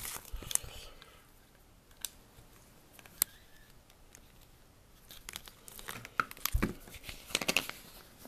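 Clear plastic sheeting crinkling and crackling as it is handled, in short bursts at the start and again over the last three seconds. A few single clicks fall in the quieter middle, and a dull thump comes about six and a half seconds in.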